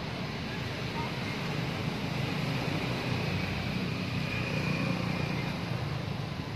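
Steady low rumble with an even hiss over it, unchanging and without distinct events.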